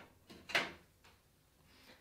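A faint, short scrape and knock about half a second in, with a small click just before it: bundled power-supply cables being pushed aside against the inside of a metal PC case.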